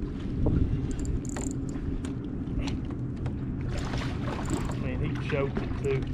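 Wind rumbling on the microphone and water lapping against a kayak, with scattered light clicks.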